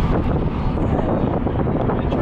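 Steady low rumble of a car driving along the road, heard from inside the cabin.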